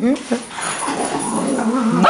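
Dogs playing, with short whines right at the start and then a noisy scuffle. A woman laughs over it.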